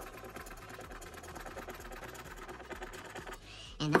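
Scratcher token rubbed rapidly back and forth over a paper scratch-off lottery ticket, scraping off the coating in a fast, even rasp. It stops about three and a half seconds in.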